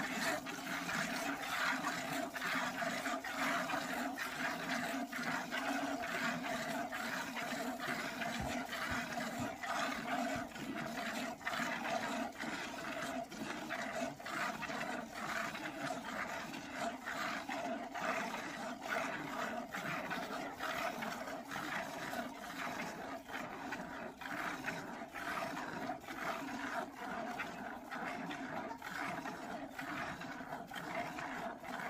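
A buffalo being milked by hand: streams of milk squirting into a plastic can in a steady rhythm of about two squirts a second, over a continuous steady hum.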